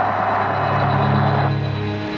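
Low steady drone from the film soundtrack with a hiss over it; the hiss cuts off about a second and a half in while the drone carries on.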